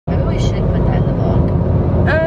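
Steady low rumble of a car cabin, with faint talking in the background.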